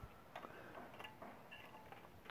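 Near silence with a few faint, scattered ticks as excess plastic is scraped off an injection molding machine's nozzle with a thin rod.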